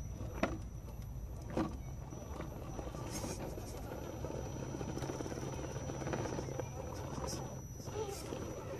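Axial SCX10 II rock crawler's brushed 35-turn motor and geartrain running at low speed as the truck crawls over rock, a steady low hum, with two sharp knocks about half a second and a second and a half in.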